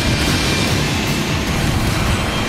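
Cartoon jet-aircraft sound effect: a steady, loud rushing whoosh as a plane speeds through a launch tunnel and takes off, with music underneath.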